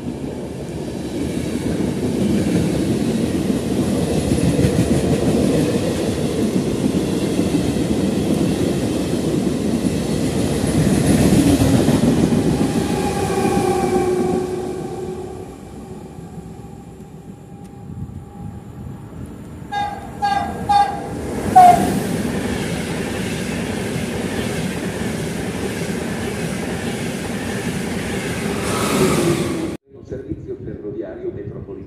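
A regional passenger train, its cab car leading, runs past along the platform with a steady rumble and wheel clatter for about fifteen seconds, then fades. About twenty seconds in come several short horn toots, followed by the steady running noise of another train.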